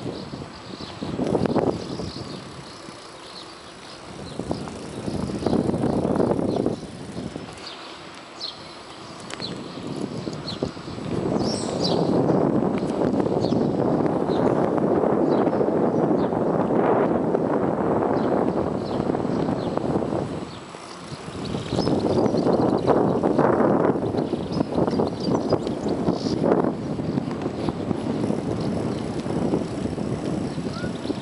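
A bicycle rattling and rumbling over paved streets, picked up by a camera riding on the bike, a dense clattery noise. It comes in long loud stretches with a few quieter spells, the quietest a few seconds in and again about two-thirds of the way through.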